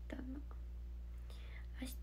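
A young woman's brief soft spoken word just after the start, then a pause holding only a steady low hum of room tone, with a faint breath or syllable near the end.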